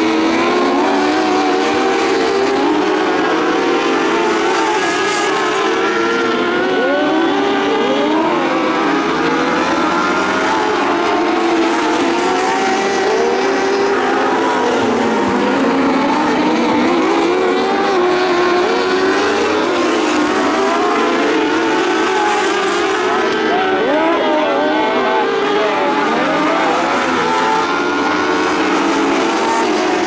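A pack of dwarf race cars with motorcycle engines running hard, several engine notes overlapping and rising and falling in pitch as the cars lap past.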